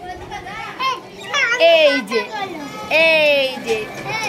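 Playful high-pitched voices of a young child and adult women, with two drawn-out calls about a second and a half in and again at three seconds.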